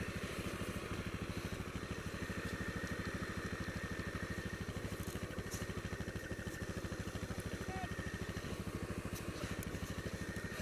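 Quad bike (ATV) engine running steadily at low speed, an even rapid chugging with no revving.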